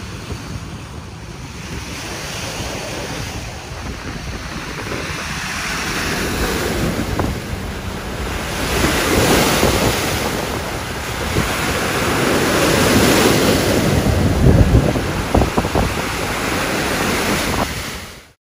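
Choppy sea waves splashing and breaking over a rock seawall revetment, rising and falling in surges, with strong wind buffeting the microphone.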